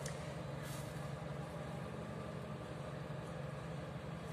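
A steady low mechanical hum, like a motor or engine running in the background.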